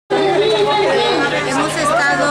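A woman's voice speaking, over a steady low hum.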